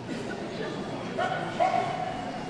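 A dog yapping twice about a second and a half in, the second call longer, over the murmur of a crowd in a hall.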